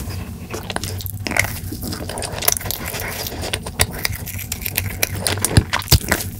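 Close-miked mouth sounds of eating an Orion Choco Pie, a soft marshmallow-filled chocolate cake: chewing and biting with many short wet clicks, and a bite into the cake near the end.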